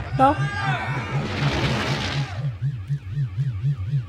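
Cartoon machine-malfunction sound effects from a control panel: a low pulsing buzz of about five beats a second under a high warbling alarm tone, with a burst of hissing noise that swells and fades about a second in.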